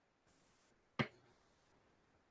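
A single sharp click about halfway through, in otherwise quiet room tone.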